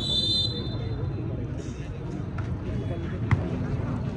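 A referee's whistle blows once, briefly, signalling the serve. About three seconds later comes one sharp smack of a hand hitting a volleyball, over a steady murmur of crowd chatter.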